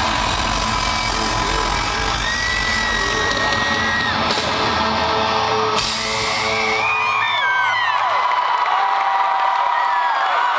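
Live rock band's final loud chords with guitar and cymbals ringing out, heard through a phone in a large hall. About seven seconds in the band's low rumble drops away and a crowd's cheering, whooping and whistling takes over.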